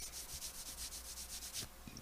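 Faint rubbing, quick evenly spaced strokes of about eight a second, stopping about a second and a half in, over a low steady hum.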